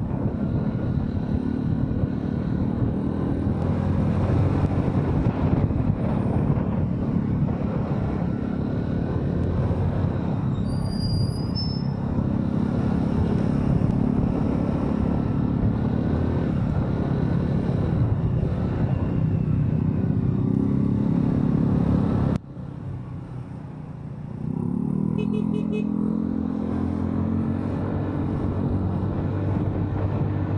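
Kymco SZ150 scooter's engine running under way in traffic, its note rising and falling with the throttle. About two-thirds of the way through the sound drops off suddenly for about two seconds, then the engine note climbs again.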